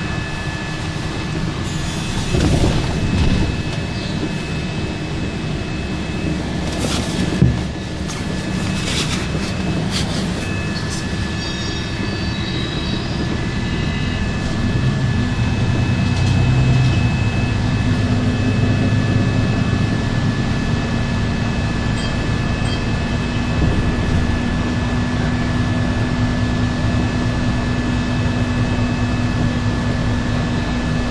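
City bus running along the road, heard from inside the passenger cabin: a steady drive noise with a thin, steady high whine. A few sharp rattles or knocks come about a quarter of the way in, and the low drone grows louder from about halfway.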